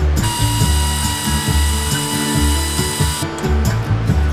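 Pneumatic air ratchet running for about three seconds, a steady high whine with air hiss, undoing the bolts that hold a plastic cargo box down; it starts just after the beginning and cuts off suddenly. Background music with a steady beat plays throughout.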